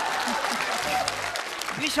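Studio audience applauding, the clapping thinning out about a second and a half in.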